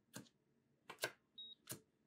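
Light clicks of a coating thickness gauge's probe being set down on a calibration foil over a metal reference disc. About one and a half seconds in, the Leptoskop 2042 gauge gives a short high beep as it records a calibration reading.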